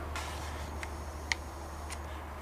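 Quiet room tone: a steady low hum with four faint, brief ticks spread through it.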